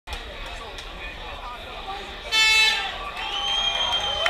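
Arena crowd noise and shouting voices, with a loud horn blast about two seconds in lasting about half a second, the signal that starts the round.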